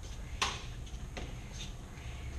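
A sharp click about half a second in and a fainter click a little after a second, over a steady low hum.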